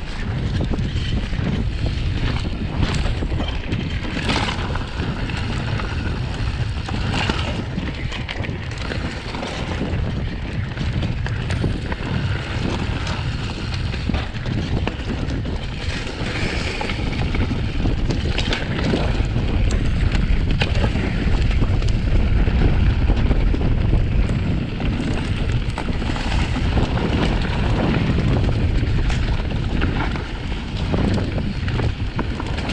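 Wind noise buffeting the camera microphone while a mountain bike is ridden along a wooded trail, with short knocks and rattles from the bike going over bumps. It gets a little louder about two-thirds of the way through.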